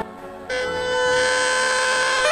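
Paper party horn blown, a steady buzzing note that starts about half a second in and is held to the end.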